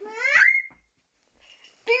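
A girl's short, high-pitched squeal that rises steeply in pitch over about half a second; a girl starts speaking near the end.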